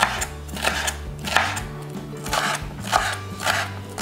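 Kitchen knife slicing peppers into strips on a cutting board, a sharp cut roughly every half second, over background music.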